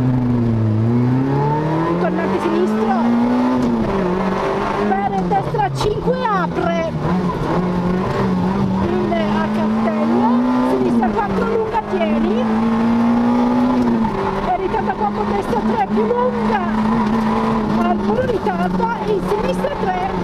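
Peugeot 106 rally car's engine heard from inside the cabin, pulling hard up through the gears from a standing start. Its pitch drops in a shift in the first second, climbs steeply for about three seconds, then holds high with brief dips around ten and fourteen seconds in.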